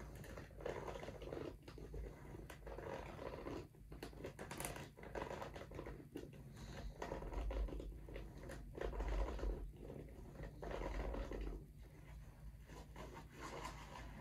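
Fingertips and nails scratching and rubbing over the nubbed rubber outsole of a new adidas golf shoe, a steady run of short, irregular scratchy strokes.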